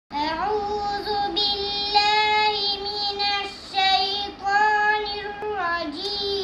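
A young girl's voice chanting Quran recitation in the melodic tajwid style, holding long, level notes in several phrases with short pauses between them.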